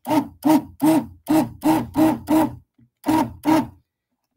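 Stick blender run in short pulses in a glass measuring cup of lotion, emulsifying the oils and water into a face cream. Each burst spins up and back down, about three a second, with a short pause before the last two.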